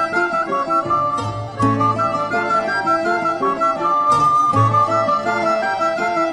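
Instrumental music: a recorder plays a melody over a backing of plucked-string chords and a low bass note that comes and goes.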